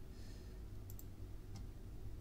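A few faint clicks of a computer mouse over a low steady hum.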